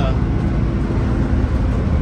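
Naturally aspirated Detroit Diesel 6-71 two-stroke diesel of a 1978 Crown school bus, heard from inside the cabin at highway cruising speed. It makes a steady low drone mixed with road and cabin noise.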